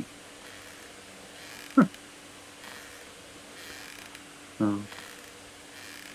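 Mostly quiet room tone with a faint steady hum, broken by a short spoken 'huh' about two seconds in and an 'uh' near the end.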